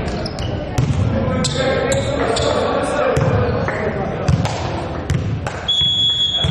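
Volleyball hall sound between rallies: players' voices and calls, with scattered sharp knocks of a ball bouncing on the hall floor. Near the end, a referee's whistle sounds one steady note, the signal for the serve.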